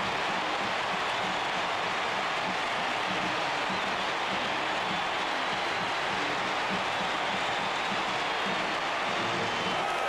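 Stadium crowd cheering in a steady, unbroken roar, the home fans celebrating a touchdown just scored on a kickoff return.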